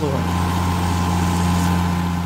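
Off-ground almond harvesting machine running steadily, its engine giving a constant low hum with a steady higher tone above it.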